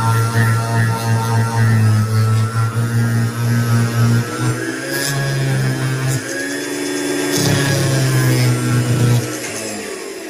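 Flex-shaft rotary tool spinning a 3M unitized cleanup wheel against a silver piece, a steady low droning hum. Its pitch shifts slightly a few times, thins briefly past the middle, and stops about a second before the end.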